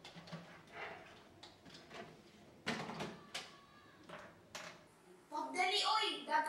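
A few scattered light knocks and clicks, irregularly spaced, as of objects being handled; a voice starts talking near the end.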